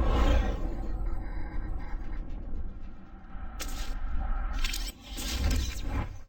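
Cinematic logo-intro sound design: a deep bass rumble fading away, then about three short whooshes in the second half before the audio cuts off at the end.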